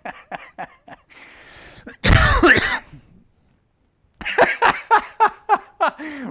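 A man laughing in short repeated bursts. About two seconds in, a loud cough breaks in, followed by a second of silence, and the laughing starts again about four seconds in.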